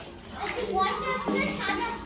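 A flock of budgerigars (parakeets) chattering and warbling, a busy mix of chirps and speech-like chatter.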